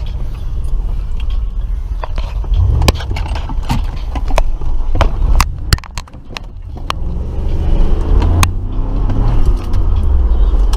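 Low, steady rumble of a car running, heard from inside the cabin. It is mixed with scattered clicks, knocks and scrapes from the camera being handled and shifted around. The rumble dips briefly about six seconds in.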